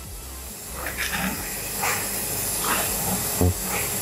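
A steady hiss that swells up about half a second in and holds, with a few faint short sounds over it.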